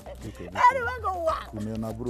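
A woman's excited, high-pitched voice crying out, with a lower voice near the end.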